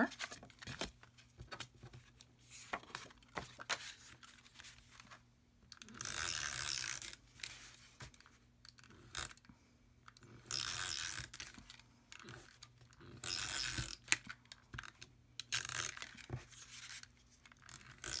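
Tombow Mono glue runner pulled across paper in four strokes of about a second each, a rasping hiss as the adhesive tape rolls off. Light paper rustles and clicks between the strokes.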